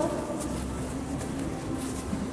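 Steady background noise with a low hum and no distinct events.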